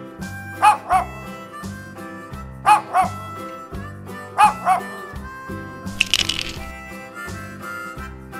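A dog barking in three double barks, about two seconds apart, over cheerful children's background music. About six seconds in there is a short noisy burst.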